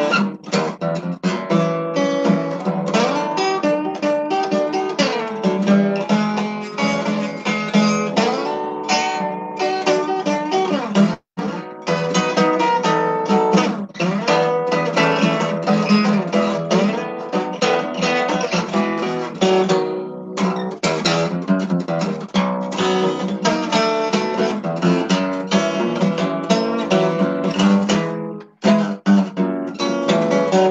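Solo steel-string acoustic guitar playing an instrumental blues passage, busy picked notes over a steady bass, with a brief break about eleven seconds in. The sound is cut off above the treble, as through a video call.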